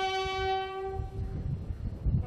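A bugle holds one long, steady note that stops a little over halfway through. Low wind rumble follows, and the next note begins right at the end.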